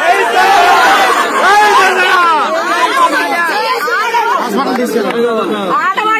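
A woman crying out and shouting in distress, loud and high-pitched, with other voices talking over her in a crowd.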